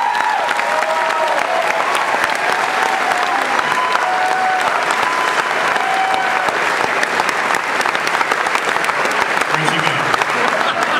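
Large audience applauding steadily, with a few voices calling out over the clapping.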